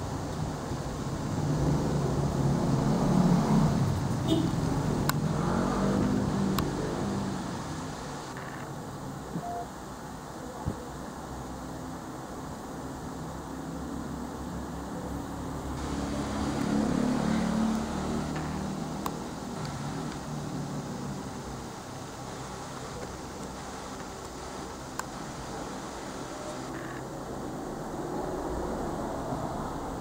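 Road traffic outside, a steady low rumble that swells twice as vehicles go by, with a few small clicks.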